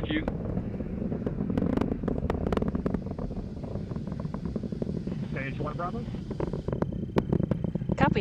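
Falcon 9 first stage's nine Merlin 1D engines heard from far off: a continuous low rumble laced with dense, irregular crackling.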